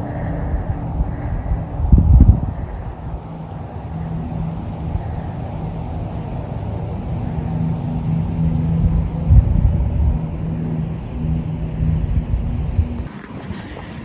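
A steady engine hum over a low rumble, with wind buffeting the microphone now and then; the sound drops away suddenly about a second before the end.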